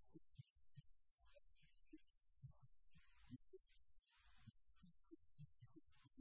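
Near silence: faint room tone with a low hum and hiss.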